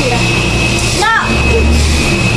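A woman's voice, briefly, about a second in, over a steady low hum that grows stronger in the second half.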